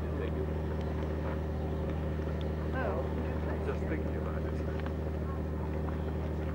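A steady low hum with even overtones, unchanging throughout, like a machine or engine running, with brief snatches of people's voices about three seconds in.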